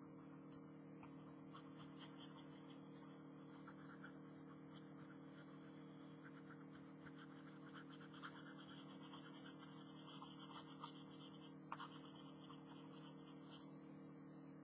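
Graphite pencil scratching on sketchbook paper in quick repeated shading strokes, faint, over a steady low hum.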